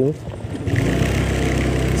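Honda Click 125 scooter's single-cylinder engine running steadily under way. It comes up about a second in, with wind and road noise over it.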